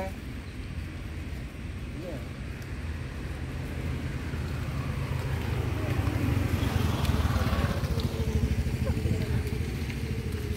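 Low outdoor rumble of a road vehicle's engine, growing louder over several seconds, with a faint steady tone in the last couple of seconds.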